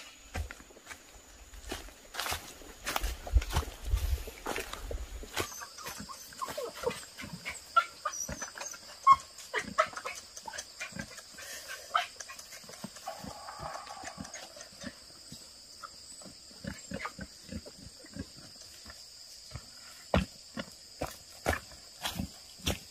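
Grunts and whines from a small dog or pig among short knocks and footsteps on the ground, over a steady high insect drone that sets in about five seconds in.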